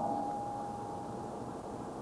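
A pause between spoken sentences: low room tone and recording hiss, with a faint steady tone held throughout.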